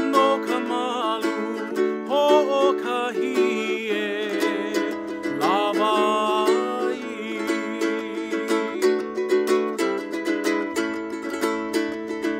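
A man singing a Hawaiian song with a strummed double-neck ukulele. The voice carries the melody for the first seven seconds or so, after which the ukulele strumming goes on mostly alone.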